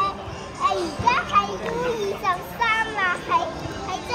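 A young boy talking in Cantonese, in a high child's voice, with pauses between phrases.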